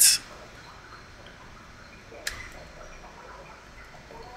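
Quiet computer keyboard typing over low room noise, with one sharper key click about two seconds in.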